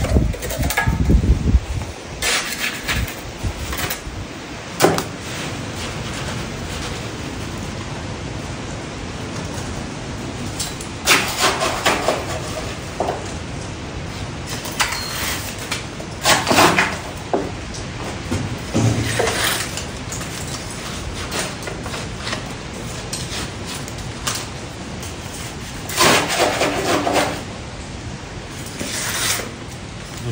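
Irregular scraping and rubbing as wet mortar is packed in around a steel I-beam lintel set in a stone wall, in bursts over a steady background hiss.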